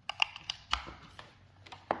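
Small plastic clicks and taps from a USB cable plug being pushed into a power bank's port and the power bank being handled, with a sharper knock near the end as it is set down on the table.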